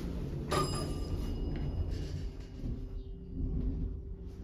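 Montgomery hydraulic elevator car in motion: a steady low rumble and hum from the lift's drive, with a short knock about half a second in that rings on for a moment.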